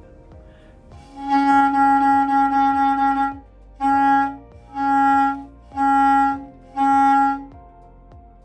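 Bass clarinet mouthpiece and neck blown on their own, without the body, sounding one steady pitched tone: a long note of a bit over two seconds, then four shorter notes at the same pitch. This is the first tone check of the looser, wider embouchure before the body is attached.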